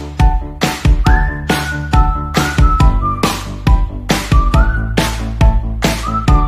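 Background music: a whistled melody with notes that slide up and down, over a steady beat of about two drum hits a second and a bass line.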